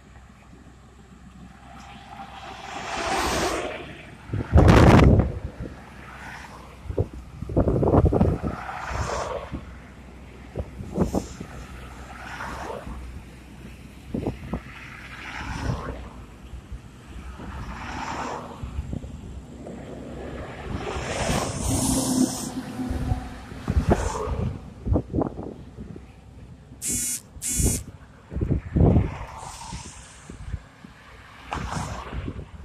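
Cars passing one after another on a two-lane road, each swelling and fading as it goes by. The loudest pass is about five seconds in.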